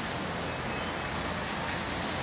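Steady background rumble and hiss of room and street noise, with a brief faint high beep about half a second in.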